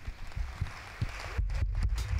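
Congregation clapping in applause, growing a little louder about a second in.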